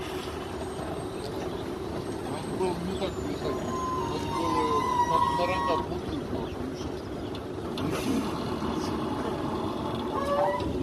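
Tractor loader engine running steadily, with short indistinct voices over it.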